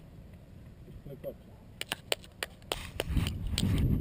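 A person clapping hands, a string of irregular claps starting about two seconds in, with a low rumble building underneath near the end.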